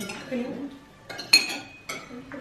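Cutlery and a serving spoon clinking against ceramic plates and bowls: several sharp clinks, the loudest and most ringing one just past the middle.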